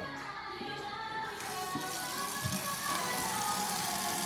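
Background music playing; about a second and a half in, a kitchen tap is turned on and runs steadily into a plastic colander in a stainless steel sink.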